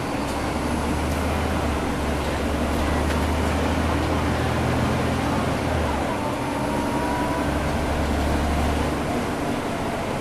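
Caterpillar C13 diesel engine of a NABI transit bus, heard from the rear seats, running under load with its engine cooling fans on. The low drone changes twice, about two and six seconds in, and eases off near the end.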